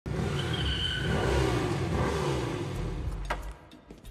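Sport motorcycle engine running as the bike rolls in, its pitch dipping and rising, then dropping away about three and a half seconds in. A single sharp metallic click comes just before it dies away.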